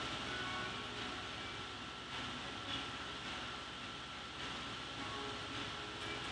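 Faint steady background hiss of the room, with a thin high steady tone running through it.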